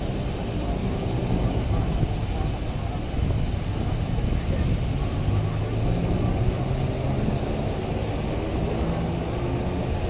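Busy city street ambience: a steady low rumble of traffic, with the chatter of people walking by.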